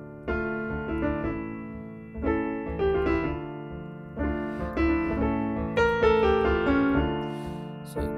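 Keyboard with a piano sound playing a D minor to A major chord progression, a chord held under a short melody, with new chords struck about every two seconds. The pairing gives a harmonic minor sound.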